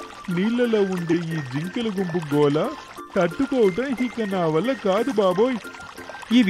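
A voice speaking in Telugu over background music.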